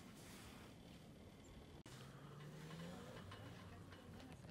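Near silence: faint background hiss, with a faint low hum that rises slightly in pitch in the second half.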